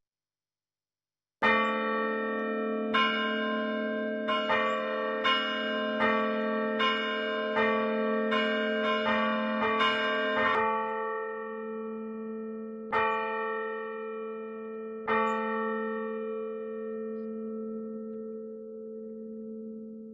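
Bells struck in a slow, uneven series, about a dozen strikes over some nine seconds, starting about a second and a half in. Two more strikes follow about two seconds apart, and the last rings on and slowly fades out near the end.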